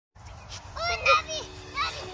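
Young children's high-pitched shouts and squeals: a few short calls bunched together, the loudest about a second in.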